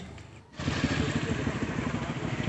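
Steady low rumble of a motor vehicle engine running nearby, coming in about half a second in after a brief quiet gap.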